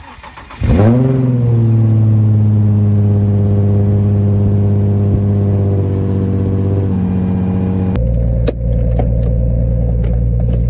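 Nissan 350Z's 3.5-litre V6 cranking on the starter and catching about half a second in with a brief rev flare, then idling steadily at the tailpipes. About eight seconds in, the sound changes abruptly to a steady engine and road sound inside a moving car's cabin, with a sharp click shortly after.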